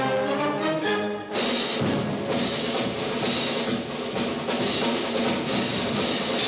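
Marching band music: brass notes for about the first second, then the drums take over with a dense, loud beat for the rest.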